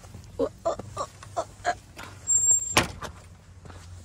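A few quick scuffing steps, then a single sharp knock about three quarters of the way through: a wooden field gate swinging shut against its post. A low steady rumble runs underneath.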